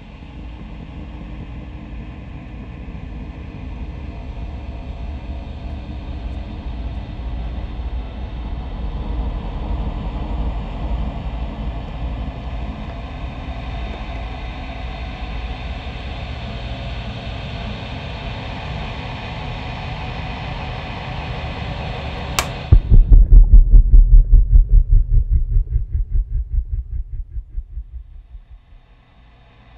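Horror-film sound design: a low rumbling drone swells over about twenty seconds. Near the end a sharp hit cuts it off, and a loud run of rapid low pulses follows and fades away.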